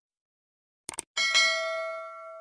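Animated subscribe-button sound effect: a quick double mouse click about a second in, then a bright bell ding that rings on with several steady tones and slowly fades, the notification-bell chime.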